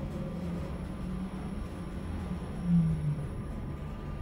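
Passenger lift travelling between floors with its glass doors shut: a steady low hum, with a brief louder swell about three seconds in.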